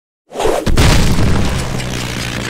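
Cartoon explosion sound effect: a sudden loud boom about a third of a second in, followed by a deep rumble that carries on.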